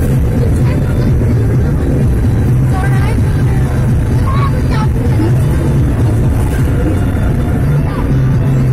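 Steady low drone of a vehicle driving at speed, heard from inside the cab, with music and brief voice fragments playing over it.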